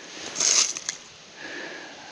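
A person's short, hissy breath through the nose about half a second in, then a faint click over quiet outdoor background.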